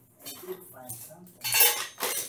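Metal tools clinking and rattling as someone rummages through them, with one louder clatter near the end.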